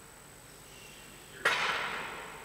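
Quiet room noise with a faint steady high whine, then a sudden short hiss about one and a half seconds in that fades away.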